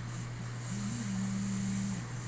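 Steady low background hum. A single held tone comes in under a second in and carries on.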